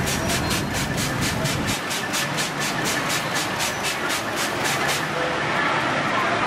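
Rapid spurts of water spray from a hand squeeze-bulb sprayer onto a hot crepe griddle, about four or five a second, stopping about five seconds in. Street noise with a low rumble runs underneath and drops away about two seconds in.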